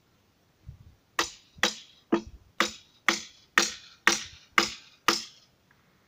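A hand tool chopping into wood with nine sharp, even strikes, about two a second, as a piece of wood is shaped by hand.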